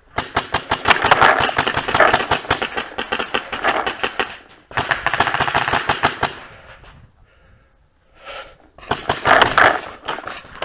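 Paintball markers firing rapidly, about ten shots a second, in long runs. There is a brief lull around the middle, then another run near the end.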